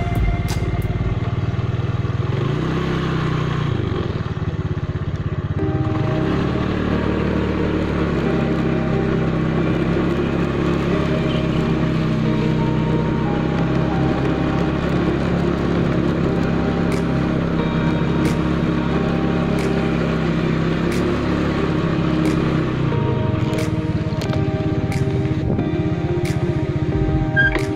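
Motorcycle engine running as the bike rides along, its pitch rising twice in the first six seconds and dropping near the end, with music playing underneath.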